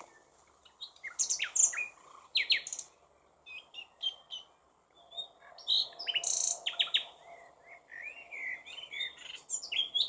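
Songbirds singing: a run of short chirps, quick falling whistles and buzzy notes in bursts, with brief gaps between phrases.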